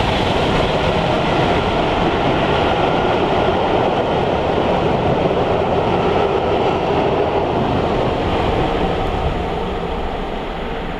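Train of passenger coaches running past at speed on the rails, a steady rolling rumble that starts to fade near the end as the last coach goes by.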